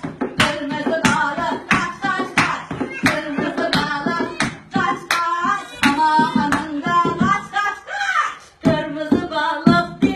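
Women singing a children's song while clapping hands to the beat, about two claps a second. The claps and singing break off briefly near the end, then resume.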